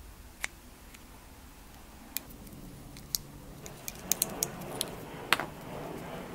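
A small pick prying a worn, leaking oil seal out of a motorcycle shock absorber body: scattered sharp clicks and scrapes of metal against the seal and shaft, with a quick run of clicks about four seconds in.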